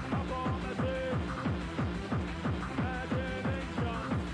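Mid-1990s rave dance music from a DJ mix: a steady, driving electronic beat of deep drum hits that drop in pitch, repeating evenly, under short high synth notes.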